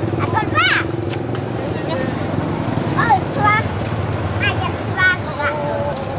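Monkeys, macaques, giving short, high, rising squeaks: a quick run of them about half a second in, and more from about three to five and a half seconds in. Indistinct voices and a steady low hum run underneath.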